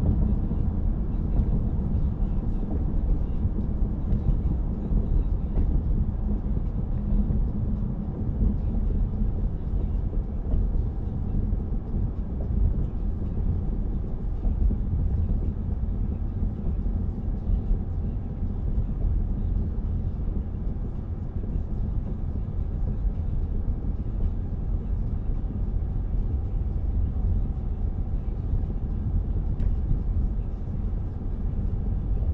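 Steady low rumble of a car driving along a road: engine and tyre noise with no sharp events.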